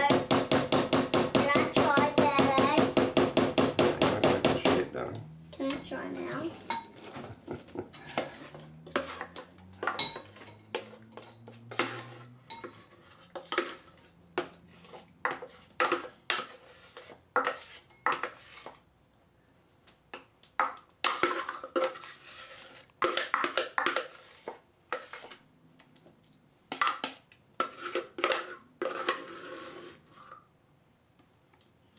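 A spoon and spatula scraping and knocking batter out of a plastic food processor bowl into a glass loaf dish: a long run of separate clicks and knocks, some sharp, some soft.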